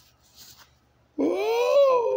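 A single drawn-out high vocal call, rising in pitch then falling away, about a second long, starting a little past the middle.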